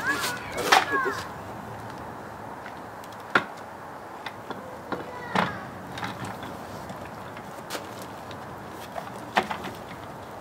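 A few sharp knocks and clicks from a gaming chair being fitted together: the seat dropped onto the base's gas-lift cylinder and settled into place. The loudest knocks come near the start and about three and a half seconds in, with lighter clicks scattered between.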